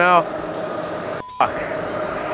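Steady city street background with traffic noise and a faint hum. It drops out for an instant at an edit about a second in, then a similar steady background resumes.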